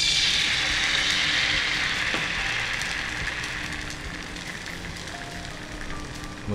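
Dosa batter sizzling as it meets a hot flat pan and is spread out: a hiss that starts suddenly and fades gradually.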